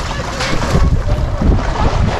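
Wind buffeting an action camera's microphone, an uneven low rumble with gusts swelling about halfway through and again near the end.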